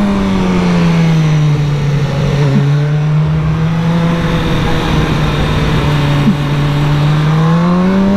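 A BMW S1000R's inline-four engine under way, heard from a camera on the bike over wind rush. The engine note eases down at first, holds steady through the middle, then rises near the end as the throttle opens.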